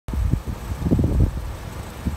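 Wind buffeting the microphone outdoors: an uneven low rumble that swells and drops in gusts.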